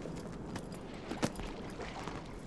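A handbag being set down on a car's back seat: faint rustling with a few small clicks, the sharpest a little over a second in.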